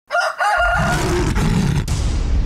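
Intro sound effect of a rooster crowing in two short wavering calls in the first second, with a low steady rumble coming in underneath about half a second in.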